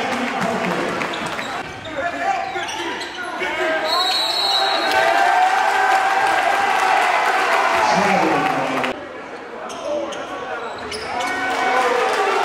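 Basketball bouncing on a hardwood gym floor during a game, with players' and spectators' voices carrying through the gym.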